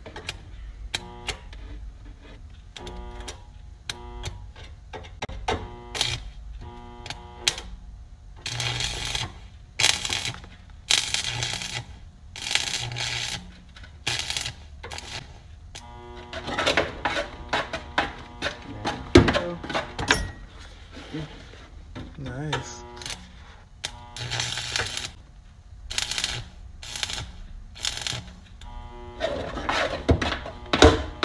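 Stick-welding arc on a sheet-steel floor-pan patch, striking and going out in short buzzing crackles about once a second. Then it holds for longer stretches of loud crackling as the weld is laid.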